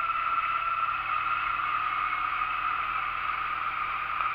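2008 Honda Nighthawk 250 parallel-twin engine running at a steady cruise, heard from the saddle together with riding noise; an even drone with no change in pitch or level.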